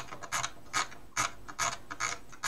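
Computer mouse scroll wheel turning in short clicking bursts, about two to three a second, scrolling down a page.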